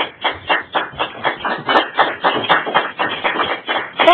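A small audience clapping, a steady run of about four claps a second.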